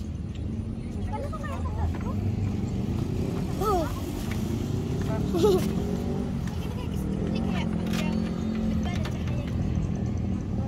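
Steady low rumble of motor traffic, with indistinct distant voices calling out now and then over it, one briefly louder about five and a half seconds in.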